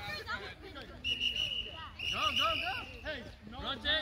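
Voices of spectators and children at a youth soccer game, overlapping chatter and calls, with two held high-pitched cries about one and two seconds in.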